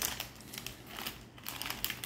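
Plastic mooncake wrapper crinkling in the hands as it is opened, with irregular scattered crackles.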